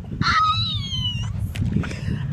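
A boy's high-pitched squeal of laughter, one long cry sliding down in pitch, over a steady low rumble.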